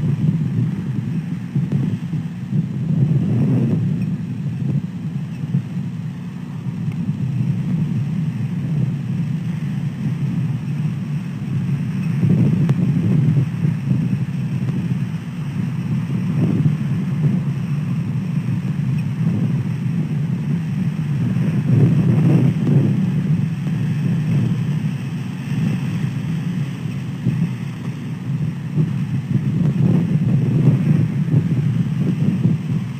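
Wind buffeting the nest camera's microphone: a steady low rumble that swells and eases in several gusts.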